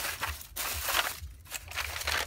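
Plastic bag and crumpled aluminium foil crinkling as a foil food tray is handled, with a brief lull a little past halfway.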